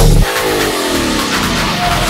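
Electronic dance music break: the thumping kick drum drops out about a quarter second in, and a buzzy pitched sound over a haze of noise glides steadily downward for about a second and a half before the kick comes back in at the end.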